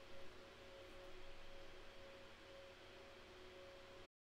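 Near silence: faint room tone with hiss and a thin, steady mid-pitched tone, joined now and then by a fainter lower tone.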